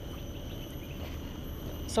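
Insects droning steadily at several high pitches, over a low rumble.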